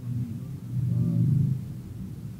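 Low rumble of a moving car in city traffic, heard from inside the car, swelling a little after a second in.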